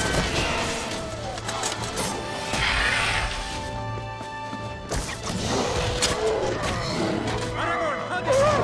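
Film battle soundtrack: sustained orchestral score over the clashes and crashes of a sword fight, with one sharp crash about five seconds in.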